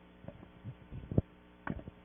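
Steady electrical mains hum of the meeting room's microphone system, with several soft knocks and rustles of a handheld microphone being lowered; the sharpest knock comes just past the middle.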